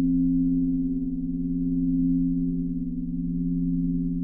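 Behringer ARP 2500 modular synthesizer sounding a low cluster of sustained sine-wave tones, held steady with no new notes, swelling and easing slowly in loudness.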